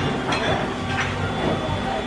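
Restaurant dining-room ambience: a steady hum of background conversation, with a couple of faint clinks of cutlery on plates.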